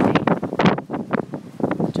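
Strong gusty wind buffeting a phone's microphone: loud, uneven surges of wind noise.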